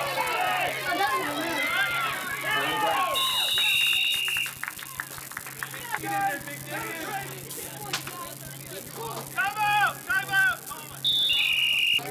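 A referee's whistle blown twice, about eight seconds apart; each blast is a short, loud, shrill tone that drops slightly in pitch, heard over crowd voices and shouts.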